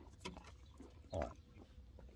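Faint snuffling from a donkey's muzzle close to the microphone, with a short sound near the start and another about a second in.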